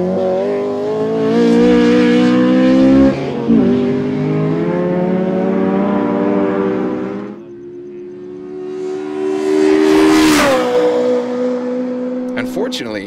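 Honda Integra Type R's four-cylinder engine revving hard on track. Its pitch climbs steadily, drops at an upshift about three seconds in and climbs again, then it goes quieter around seven seconds. Just past ten seconds a car passes close by, its note falling quickly in pitch.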